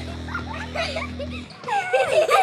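Young girls laughing and squealing, short high yelps that bend up and down, over a held music chord that cuts off about one and a half seconds in; the laughter grows louder near the end.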